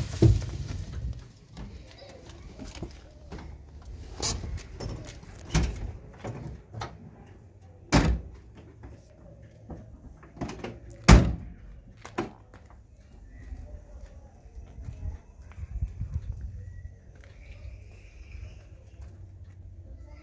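Pickup truck door being handled: a series of sharp clicks and clunks, with the loudest, a door slam, about eleven seconds in.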